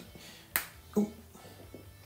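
A small plastic vial snapped open by hand: one sharp click about half a second in.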